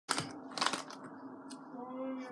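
A small plastic snack wrapper crinkling as it is handled, twice in the first second, over a person's steady closed-mouth hum that rises in pitch near the end.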